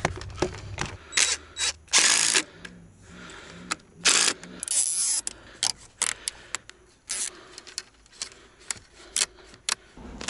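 Hands working plastic pipe fittings on black poly water pipe: irregular clicks and knocks, with a few short scraping rustles about two, four and five seconds in.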